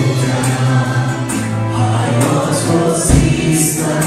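Live worship band: male and female voices singing a Persian worship song together over acoustic guitar, with a low drum thump a little after three seconds in.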